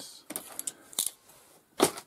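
Ratcheting connector crimper clicking as it crimps a Dupont pin onto a wire, with a sharp click about a second in and a louder snap near the end.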